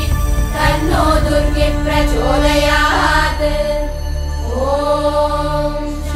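Sanskrit Vedic chanting by women's voices, phrases rising and falling over a steady low drone, with a short pause about four seconds in before the next phrase begins.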